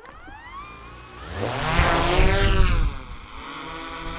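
DJI Mavic 3 quadcopter taking off: its motors spin up with a rising whine, then a louder rush peaks as it lifts off, and it settles to a wavering whine as it climbs away.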